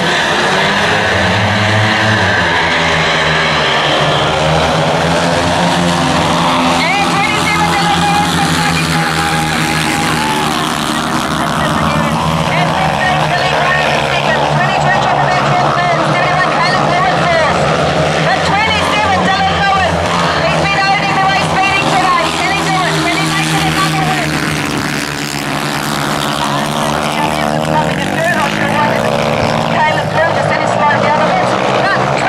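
Several speedway solo bikes, 500cc single-cylinder methanol engines, revving at the start gate and then racing round the track. The engine pitch rises and falls continuously as they accelerate down the straights and shut off into the bends.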